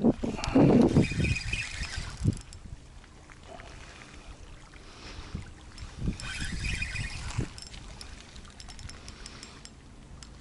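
A spinning reel and rod being handled in two bouts, in the first two seconds and again around six seconds in, over small waves lapping at the lakeshore.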